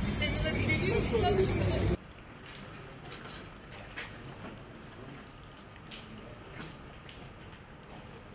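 Loud street noise of voices and traffic, recorded on a phone, cuts off suddenly about two seconds in. After it comes a quiet room with faint scattered rustles and clicks of paper sheets being handled.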